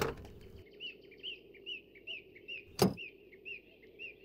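A bird chirping over and over, a short falling chirp two to three times a second. A sharp knock comes right at the start and another just before three seconds in, as the door of a Mahindra Bolero SUV is opened and handled.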